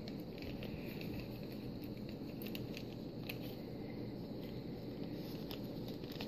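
Small clear plastic bag and nail-art packaging being handled: faint scattered crinkles and clicks, mostly in the second half, over a steady low background hum.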